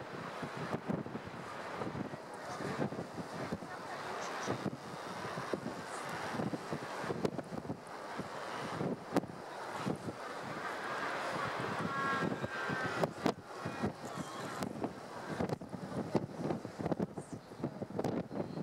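Wind buffeting the camera's microphone: a steady rushing noise broken by frequent, irregular knocks.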